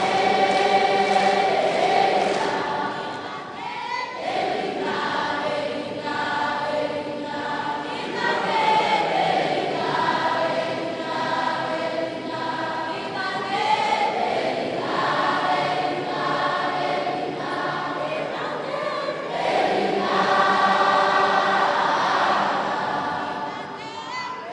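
A group of voices singing together in phrases of long held notes, dying away near the end.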